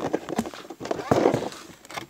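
Hands handling and turning a cardboard Lego box: a scatter of light knocks and taps from fingers on the cardboard, with a softer rustle about a second in.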